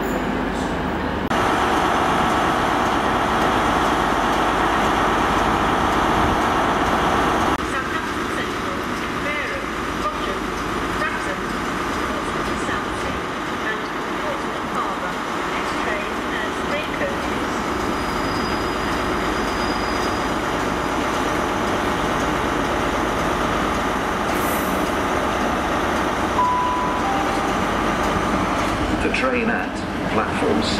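Diesel multiple-unit trains running and moving through a railway station, with voices on the platform. A short single-pitch beep sounds near the end.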